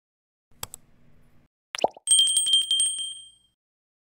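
Subscribe-button animation sound effects: a mouse click, a short pop that drops in pitch, then a small bright bell rung rapidly, about ten strokes a second, for about a second and a half before it fades.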